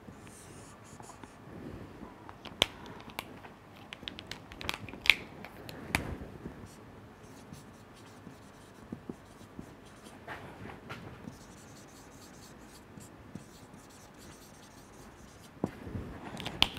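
Quiet marker pen writing and drawing on a whiteboard: faint scratchy strokes of the felt tip, with scattered sharp taps and clicks as the marker meets the board.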